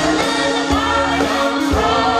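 Live pop band with drums and bass backing three singers, two women and a man, singing together. A kick drum beats about once a second under held sung notes.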